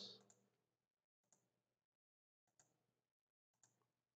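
Near silence, broken by three very faint computer-mouse clicks about a second apart, made as lines are selected one by one in a drawing program.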